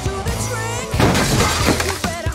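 Rock song with a singer, and a loud crash of breaking glass about a second in that lasts under a second.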